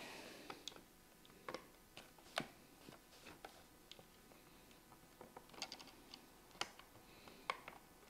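Faint, irregular light clicks and taps of plastic being handled: fingers adjusting a white plastic cover that houses a small motorised mechanism. There are about a dozen small clicks spread unevenly through an otherwise near-silent stretch.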